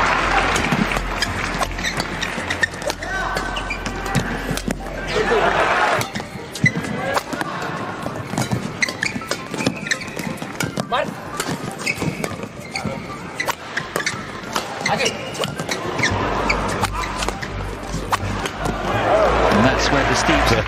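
Badminton rallies: sharp racket strikes on the shuttlecock and shoes squeaking on the court, with the crowd cheering in swells as points are won, around five seconds in and again near the end.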